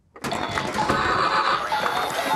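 Film soundtrack cutting in abruptly from near silence a fraction of a second in: a loud, dense, harsh wash of sound with a few steady high tones, lasting to the end.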